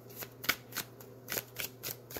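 A deck of divination cards being shuffled by hand: about six quick, irregular card slaps and snaps in two seconds.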